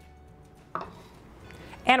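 A single short knock of a kitchen utensil against a glass mixing bowl of panko breadcrumbs a little under a second in, followed by faint scraping in the crumbs.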